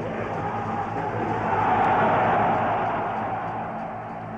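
A crowd cheering and applauding, swelling to its loudest about two seconds in and then fading, over a steady low hum from old film sound.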